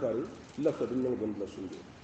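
A male preacher's voice, drawn-out and sing-song without clear words, in two phrases; the second fades out about a second and a half in.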